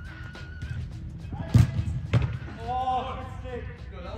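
Two sharp thuds about half a second apart, the sound of a soccer ball being struck and then met by a goalkeeper's hands, over background music, with a voice near the end.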